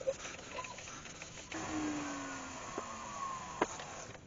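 Faint rubbing of a cloth pressed against a small wooden workpiece spinning on a lathe, applying sand and sealer, with a few light clicks and a faint slowly falling tone partway through.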